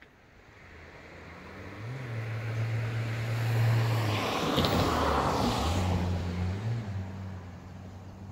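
A car driving past: its engine note and tyre noise build to a peak about five seconds in, then the engine tone drops in pitch and fades as it moves away.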